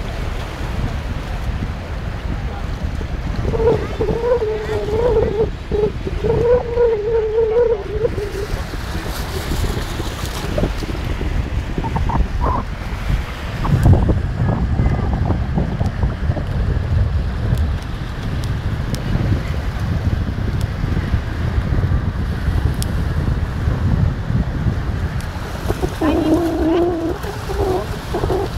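Wind rumbling on the microphone over small waves washing onto a shallow sandy shore. A voice calls out in long, wavering tones for a few seconds near the start.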